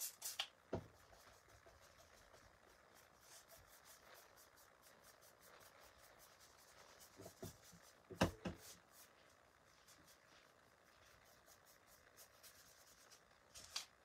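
Faint scratching and dabbing of a small paintbrush working paint on a board, with a few light knocks of tools against the desk, the loudest about eight seconds in.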